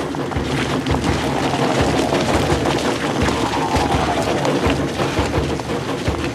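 Sound-design soundscape of a vast crowd of footsteps pounding on pavement, a dense patter of many steps layered with music and faint falling tones.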